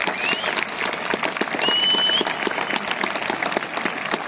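Large stadium crowd applauding, a dense steady clapping, with two brief high-pitched tones sounding over it early on and about a second and a half in.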